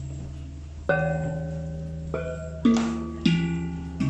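A row of hanging bossed gongs struck one at a time with a stick: four notes at different pitches, each ringing on and fading, the last two the loudest.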